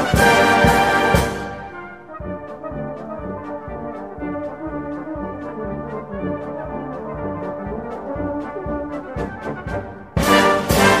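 Brass band playing a march. Loud full-band playing drops about a second in to a softer passage, with short accented notes about two a second, and builds again near the end.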